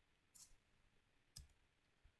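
Near silence with two faint computer-mouse clicks, one under half a second in and one about a second later.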